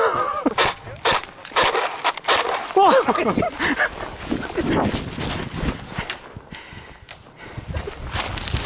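Footsteps and rustling through dry scrub and grass, with many sharp clicks and knocks in the first three seconds. A short voiced sound comes about three seconds in.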